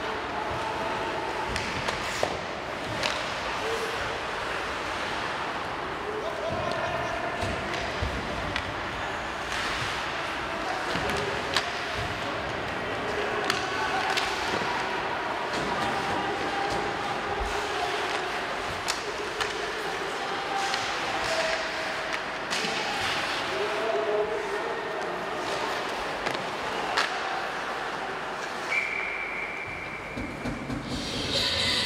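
Ice hockey rink sound during live play: sharp knocks of sticks on the puck and the puck hitting the boards, over a steady arena hubbub of indistinct shouting voices. Near the end a long steady whistle blast, the referee stopping play.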